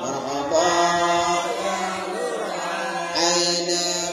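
A man's voice chanting a qasida, an Islamic devotional praise song, into a microphone in long, held, melismatic phrases.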